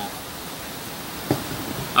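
A pause in speech filled by steady, even background hiss, with one brief faint sound a little over a second in.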